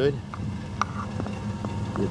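Dodge Ram 1500's 3.9-litre V6 idling steadily.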